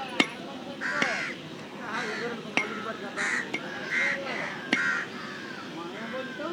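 A cleaver chopping raw chicken on a wooden stump block: five sharp chops at uneven intervals. Crows caw repeatedly in between.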